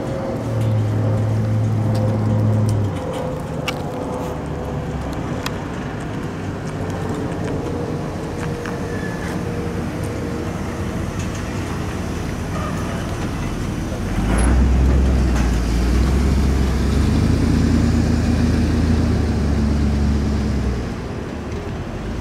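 Motor vehicle engines running close by: a strong low engine note for a couple of seconds from about half a second in, then a cab-over box truck's engine comes in louder and deeper about two-thirds of the way through and holds for several seconds before easing off.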